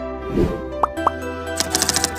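Channel-intro jingle: background music with a short falling sound effect about a quarter of the way in as an on-screen search bar drops into place, then a rapid run of keyboard-typing clicks starting near the end as the channel name is typed in.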